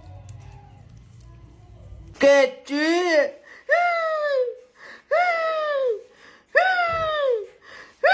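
A high-pitched voice making four drawn-out calls about a second and a half apart, each sliding down in pitch, after a low hum.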